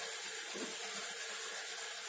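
Ballpoint pen writing on paper: faint scratching strokes over a steady hiss.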